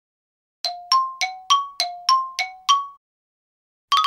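A bell-like chime sound effect: eight quick struck dings, about three a second, alternating between a lower and a higher note, each ringing briefly before the next.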